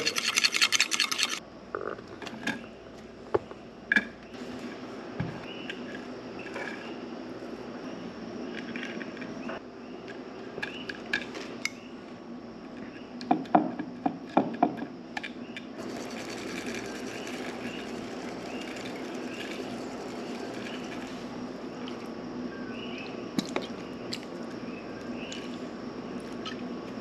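A fork scraping around a ceramic bowl for about the first second, then scattered clinks and light knocks of utensils and dishes on a wooden table, with a cluster of them about halfway through, over a steady low background hum.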